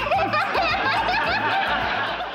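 A woman laughing: a high-pitched giggle in many quick, repeated peals.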